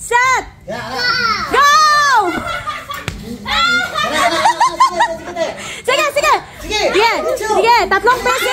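Several onlookers calling out and laughing in excited, high-pitched voices that overlap, with no clear words.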